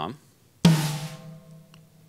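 A single stick stroke on a drum kit's tom about half a second in. The drum rings out with a steady pitched tone that fades away over more than a second.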